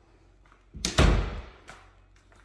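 Interior closet door pushed shut: one loud thud as it meets the frame, fading over about half a second, then a small click.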